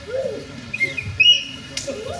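Short high-pitched vocal exclamations and squeals, gliding up and down, the loudest about a second in, followed by a sharp click near the end.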